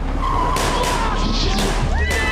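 Car tires squealing over a low engine rumble, as a car skids up.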